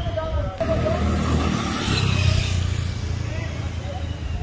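Motor scooter riding past close by, its small engine growing loudest about two seconds in and then fading, with voices behind it.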